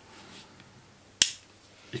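A single sharp click about a second in from a Victorinox Rescue Tool pocket knife being handled, as one of its tools snaps shut.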